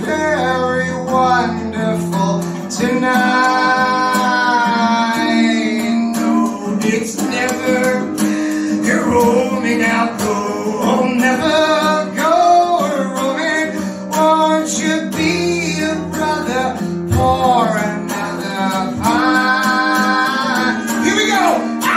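A male singer's voice over a strummed acoustic guitar, performed live; a few seconds in he holds one long wavering note.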